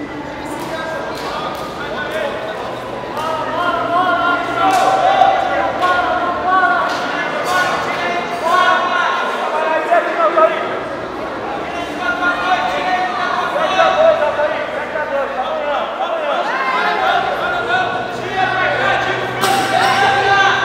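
Several people shouting and calling out over one another in an echoing sports hall, with a few sharp claps or knocks among the voices.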